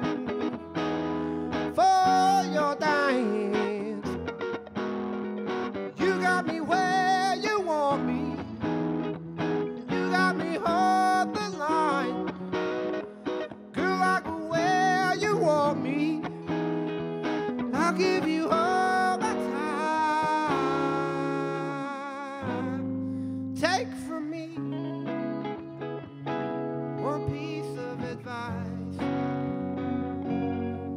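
Two electric guitars playing a song live, one with a lead line of bent, wavering notes over chords. In the last third the playing thins to longer held chords.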